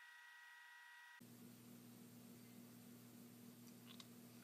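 Near silence: faint room tone with a low steady hum. The background changes at an edit about a second in.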